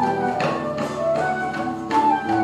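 Small mixed ensemble playing a slow melody: a wooden transverse flute holds long notes over a plucked bağlama (long-necked Turkish lute) and classical guitar, with hand-drum strokes falling in between.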